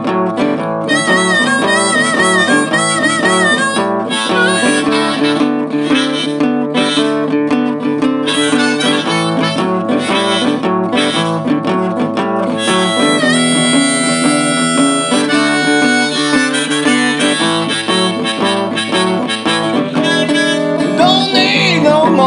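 Diatonic harmonica in D, played in second position (cross harp), taking a blues solo over an acoustic guitar backing. The first few seconds have wavering, bent draw notes, and about halfway through it holds long steady chords.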